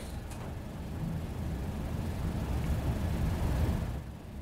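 Low steady rumble of room noise with a faint hiss, slowly growing a little louder toward the end.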